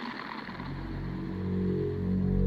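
Ambient music fading in: a soft rushing noise, then low sustained drone tones that swell in about half a second in and keep growing louder.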